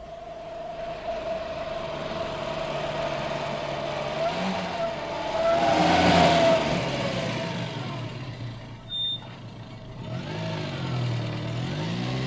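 A motor vehicle running, growing louder to a peak about halfway through and then easing off, with a steady whine over it. A brief high beep comes about nine seconds in.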